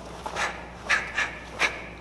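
Four quick, sharp rushes of sound, one for each technique of a karate rising block, inside block, down block and reverse punch done fast: the cotton karate uniform snapping and sharp breaths.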